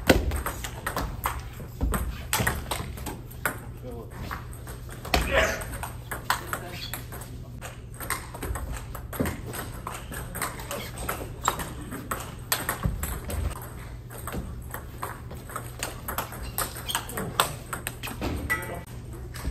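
Table tennis rallies: repeated sharp clicks of the ball striking rubber paddles and bouncing on the table, coming in quick irregular runs, over a steady low hum. A voice is heard briefly about five seconds in.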